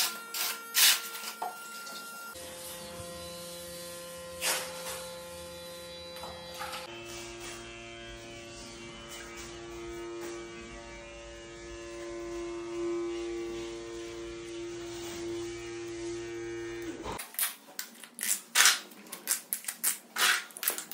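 Handheld suction-cup tile vibrator buzzing steadily on a large porcelain floor tile, settling it into the adhesive. The buzz starts about two seconds in, drops to a lower pitch about seven seconds in, and cuts off a few seconds before the end, followed by sharp clicks and knocks.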